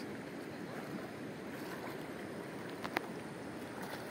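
Steady wash of river water with faint lapping, and a short sharp click about three seconds in.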